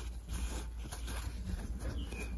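Soft rustling and rubbing of fabric being folded and handled over an elastic cord, with a low steady hum underneath.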